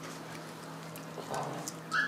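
Pomeranian puppy chewing and gnawing on a small toy or treat held in its paws, giving a few small clicks.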